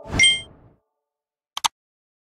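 Intro-animation sound effects: a bright, ringing ding with a thud under it, dying away within half a second, then about a second and a half later two quick mouse-style clicks as the animated cursor presses a Subscribe button.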